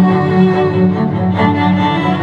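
Cello ensemble bowing a pop-song arrangement: sustained higher lines over a low note repeated in short, even pulses.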